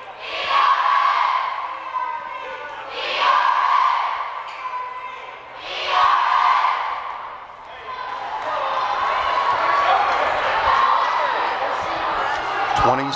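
Gymnasium crowd at a high school basketball game: three loud swells of crowd shouting, about three seconds apart, then a steady crowd din, with a basketball bouncing on the hardwood.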